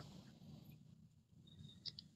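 Near silence: faint low room noise, with a small click just before the end.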